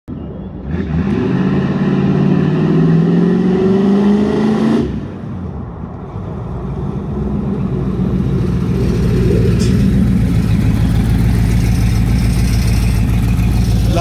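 1974 Chevrolet Impala's V8 accelerating, its pitch rising steadily for about four seconds before the throttle is let off abruptly. A couple of seconds later the engine comes back as a steady, deep rumble that grows louder as the car draws near.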